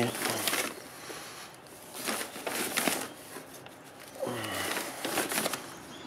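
A plastic tub scooping damp sand out of a sack, in a series of short gritty scrapes and rustles of the sack.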